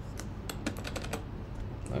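Computer keyboard keys tapped in a quick run of about seven clicks over the first second, then one more near the end, as a text box is nudged into place.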